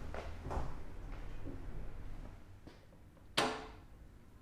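Soft knocks and clunks of handling, then one sharp metallic clunk with a brief ring about three and a half seconds in, as the engine's rotary electric control switch is turned.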